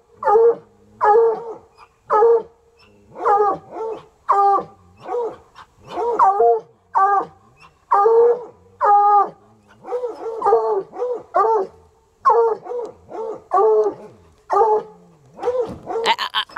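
Coonhound barking over and over, a steady string of short pitched barks at about three every two seconds, at an animal hiding up inside the car's undercarriage.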